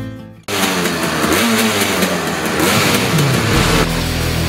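Racing kart engines revving, several pitches rising and falling together over a loud rushing noise, after the music cuts out about half a second in. Heavy rock music starts just before the end.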